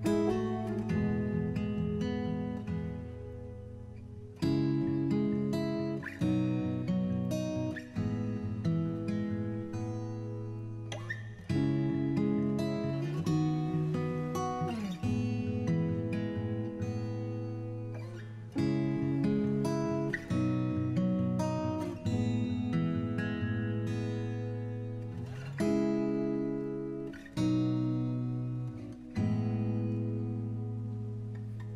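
Background music: an acoustic guitar picking chords, a new one struck every second or two and each ringing away.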